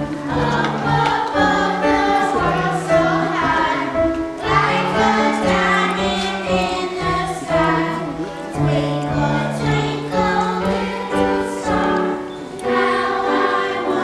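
Children's choir singing a song together, accompanied on piano, with sustained low notes under the voices.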